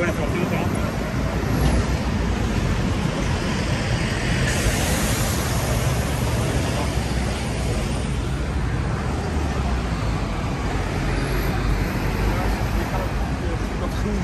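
Steady road traffic on a busy city street: engines and tyres of passing cars and trucks, with a louder swell of noise about five seconds in. Passers-by's voices mix in.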